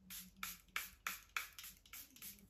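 Fine-mist pump of a Charlotte Tilbury Airbrush Flawless Setting Spray bottle being worked repeatedly, giving a run of short, quick hisses about three a second.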